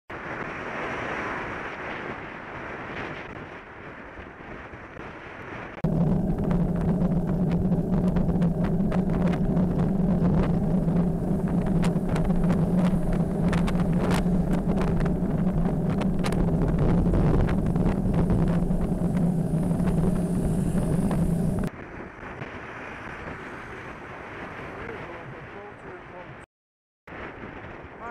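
Wind and road noise on a moving bicycle camera. A louder steady low drone with a clatter of clicks starts suddenly about six seconds in and cuts off just as suddenly about fifteen seconds later.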